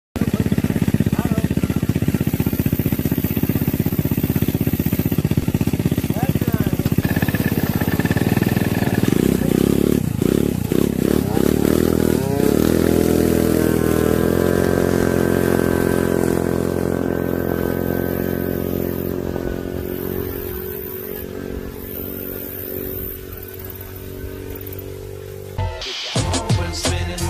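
Two small scooter engines, a Honda Ruckus's 150cc GY6 four-stroke and a 70cc two-stroke Yamaha Zuma replica, run together at the line. About ten seconds in they rev up and down, then pull away, their pitch climbing steadily as the sound fades into the distance. The sound cuts to music just before the end.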